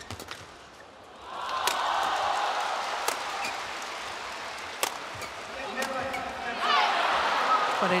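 Badminton rackets hitting a shuttlecock in a rally, sharp cracks about a second and a half apart that stop about five seconds in. An arena crowd grows loud about a second in and swells with cheering and shouts near the end as the point is won.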